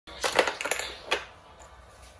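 Eraser slider of a VTech Write and Learn Creative Center magnetic drawing board pushed across the screen to wipe it, a rough rasping scrape in several quick bursts in the first second, ending with one more just after.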